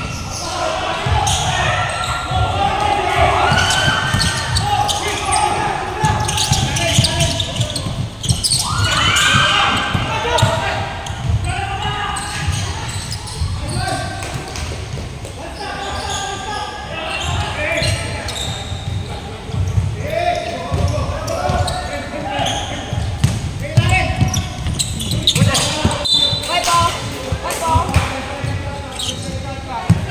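Basketball dribbled on a hardwood court, a run of low bounces, mixed with players calling out, all echoing in a large indoor sports hall.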